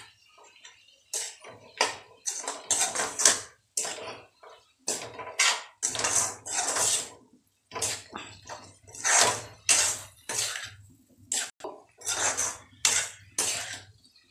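Metal spatula scraping and clanking against a metal kadai in repeated, irregular strokes as chopped tomatoes and onions are stirred.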